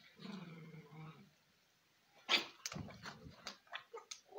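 A low, drawn-out animal sound lasting about a second, then after a pause a run of sharp clicks and knocks.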